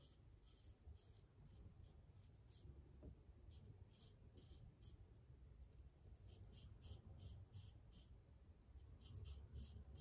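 Faint, short scraping strokes of a double-edge safety razor's blade cutting through long stubble, coming in quick irregular runs.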